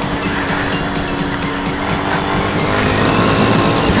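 Yamaha Fazer 250's single-cylinder engine running under way, its note climbing gradually as the motorcycle accelerates, with wind noise on the helmet-camera microphone.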